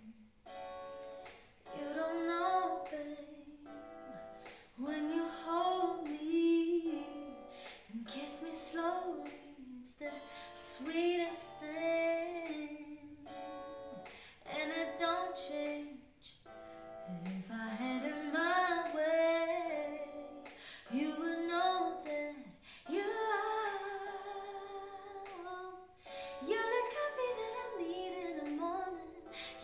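A woman singing a slow, soulful ballad in short phrases of a second or two with brief pauses between them, over a plucked guitar accompaniment.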